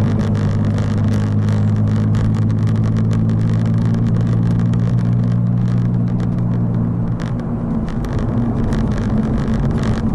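Porsche engine heard from inside the cabin, a steady drone at cruising speed that eases off about seven seconds in. Road and tyre noise and scattered light clicks run underneath.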